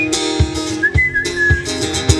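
Acoustic guitar strummed at about two strokes a second, with a whistled melody of a few held notes over it.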